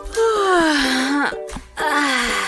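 A girl's voice letting out a long, drawn-out moan that falls in pitch, with a second one starting near the end, over background music.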